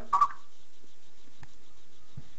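A brief spoken "Oh" at the very start, then a quiet lull on a speakerphone call waiting on hold, broken only by one faint click about one and a half seconds in.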